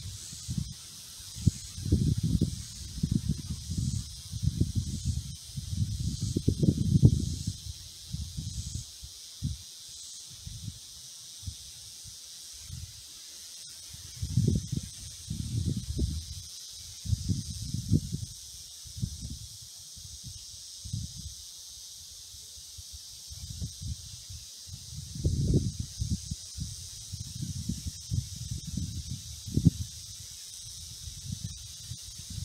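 Outdoor field ambience: a steady high hiss of summer insects from the trees, broken by clusters of loud, low, irregular rumbles of wind buffeting the microphone, with quieter stretches in between.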